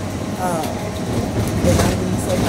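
Steady low rumble inside a vehicle's cabin, with a brief wordless vocal sound from a woman about half a second in.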